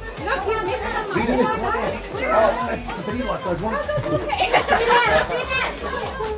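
A group of children shouting and chattering over one another as they play, many high voices overlapping at once.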